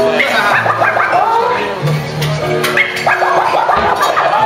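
Vinyl records being scratched on DJ turntables over music: a run of quick back-and-forth scratches that sweep up and down in pitch.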